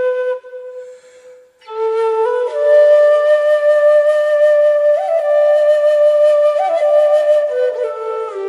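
Background music: a slow melody of long held notes on a flute, breaking off briefly about half a second in and coming back in about a second later.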